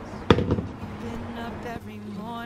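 A pop song with a singer plays in the background. About a third of a second in there is one sharp clack, followed by a few lighter knocks.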